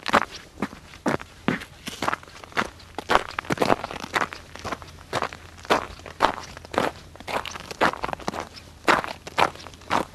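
Footsteps at a steady walking pace, about two steps a second, each step a short scuffing stroke on a gritty surface.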